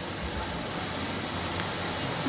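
A steady rushing background noise with a faint low rumble and no speech.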